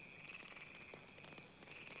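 Crickets chirping faintly and continuously, with a few soft clicks.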